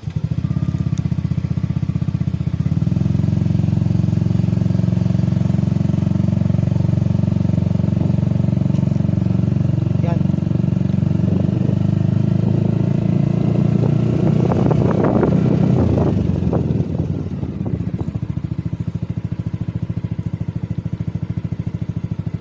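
Yamaha NMAX scooter's single-cylinder engine starting up suddenly and running steadily while it pulls away at low speed. A burst of rough noise comes about two-thirds of the way in, and the engine drops to a quieter idle near the end as the scooter stops.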